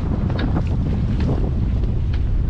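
Steady wind buffeting the microphone on an open boat at sea, a low rumble with the wash of water underneath.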